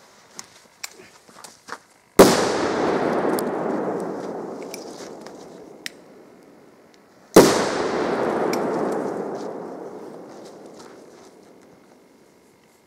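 Two loud firecracker bangs, about five seconds apart, from Bomberos 2.0 Spanish crackers. Each bang is followed by a long echoing rumble that fades over several seconds. Faint small crackles come before the first bang.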